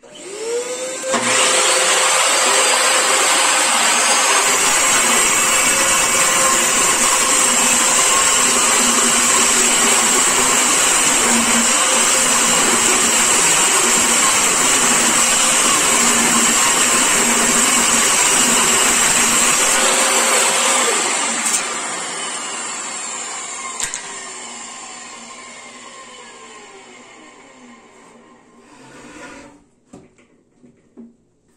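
Portable bench-top table saw starting up and ripping a thick wooden plank lengthwise, its motor running loud and steady under load. About two-thirds of the way through it is switched off, and the blade winds down with a slowly falling pitch.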